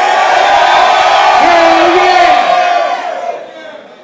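Concert crowd cheering and yelling, many voices held together, fading out near the end.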